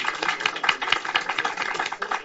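Audience applauding: a dense, steady patter of hand claps.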